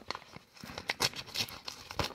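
Paper envelope handled with bare hands, a string of faint, irregular rustles and small crackles as it is turned over and its flap is pulled open.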